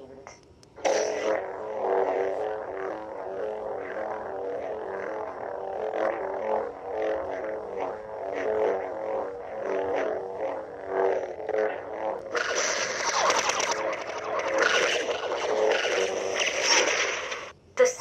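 Xenopixel V3 lightsaber sound board playing through the hilt's speaker: the saber ignites about a second in and hums, the hum's pitch wavering with swings, then turns louder and harsher from about two-thirds of the way in, and shuts off with a retraction just before the end.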